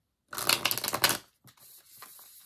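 Tarot cards being shuffled by hand: a dense, rapid run of card flicks lasting under a second, then a softer rustle of cards.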